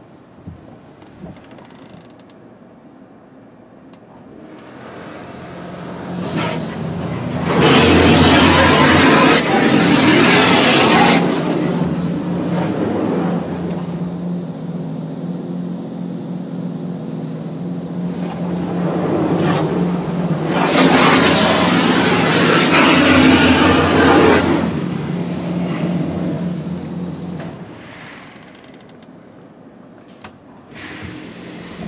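Automatic car wash heard from inside the car: the wash machinery's steady low hum builds up, and spray sweeps over the car twice, each pass a loud wash of water hitting the body and glass for several seconds. The hum and spray die away near the end.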